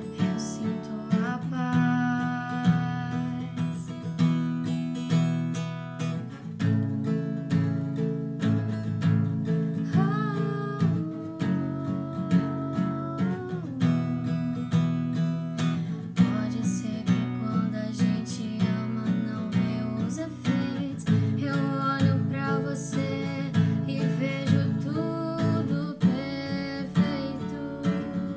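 Acoustic guitar strummed in a steady rhythm, with a woman singing a sertanejo ballad in Portuguese over it in several phrases.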